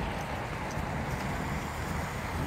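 Steady outdoor street background noise: a low rumble with an even hiss and no distinct events.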